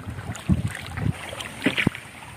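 Small boat being paddled on a lake: a few short knocks and splashes, one about half a second in and a couple near the end, with light wind on the microphone.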